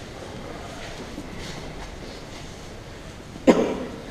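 A single cough about three and a half seconds in, over a steady low background noise.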